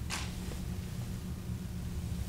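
A marker drawing a line on a whiteboard, one short scratchy stroke near the start, over a steady low room hum.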